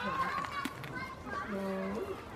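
A goat biting into a cucumber held out by hand, with a few sharp crunches, among wavering high-pitched voice-like calls and a short, steady low hum near the end.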